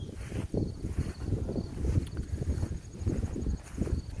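Wind buffeting the microphone in an uneven low rumble, with insects trilling faintly and steadily above it.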